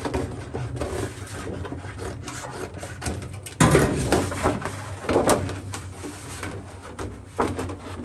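Stiff cardboard pattern sheet rubbing and scraping against the car's sheet-metal body as it is slid and flexed into place, with louder scrapes about three and a half, five and seven and a half seconds in.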